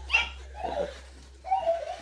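A few brief, soft laughs and voice sounds from people in the room, over a low steady hum.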